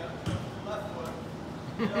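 Indistinct voices, with a thud about a quarter of a second in and a short laugh near the end.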